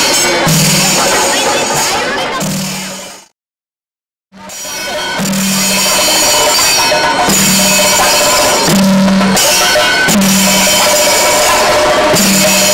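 Kerala temple percussion ensemble playing: chenda drums with elathalam hand cymbals ringing steadily over them, amid crowd noise. The sound fades out to silence a little after three seconds in and fades back up about a second later.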